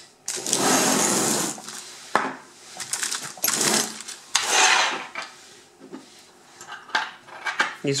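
Hands handling metal euro lock cylinders and keys on a wooden table. Several long scraping or rustling sweeps come in the first half, then small metallic clicks and taps of keys near the end.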